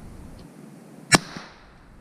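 A single shot from a .22 Crickett rifle about a second in: one sharp crack with a short ring-off through the woods.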